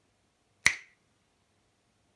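A single finger snap, sharp and bright, with a short ring after it.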